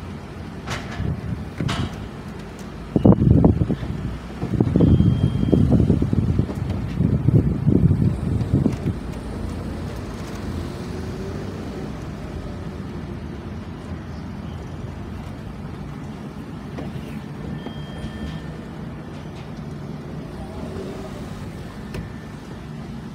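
Steady low outdoor background rumble, broken from about three to nine seconds in by loud, choppy gusts of wind on the microphone.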